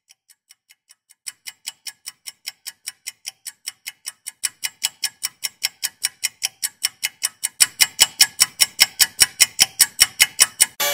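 Clock-like ticking used as a build-up in a music intro. The ticks start at about four a second and speed up to about seven a second. They grow louder in steps, and a deep thud joins each tick in the last couple of seconds.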